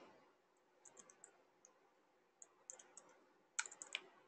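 Faint keystrokes on a computer keyboard, a few short runs of light taps with the busiest run near the end.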